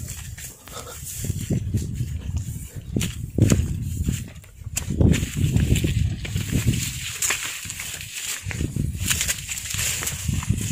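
Footsteps and rustling through dry brush on a rocky hillside path, with irregular low rumbles from wind or handling on the microphone and scattered small clicks.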